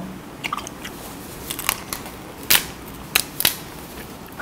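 Cooked lobster shell being cracked and pulled apart by hand: a string of sharp cracks and snaps, the loudest about two and a half seconds in.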